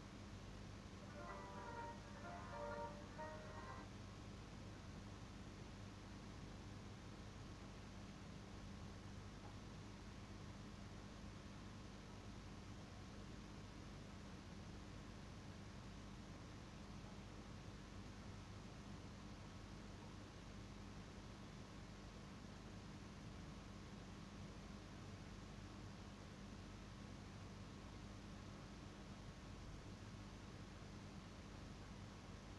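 Near silence with a steady low hum. About a second in, a brief run of high, short musical notes lasts for about three seconds and then stops.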